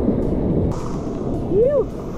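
Surf washing and rushing around the camera, with wind buffeting the action camera's microphone. Near the end a man gives one short shout that rises and falls in pitch.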